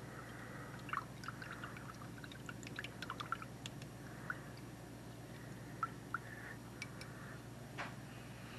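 A thin wooden stick stirring watered-down white glue in a small ceramic bowl: soft liquid swishing with many small clicks of the stick against the bowl, busiest in the first few seconds and sparser later.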